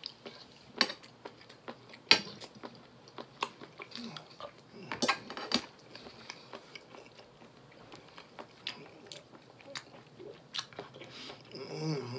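A man chewing food, heard as a string of irregular sharp mouth clicks with a dense cluster about five seconds in.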